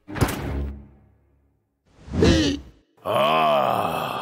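A knock just after the start, then a cartoon bear's wordless voice: a short vocal sound about two seconds in and a longer one near the end whose pitch rises and then falls.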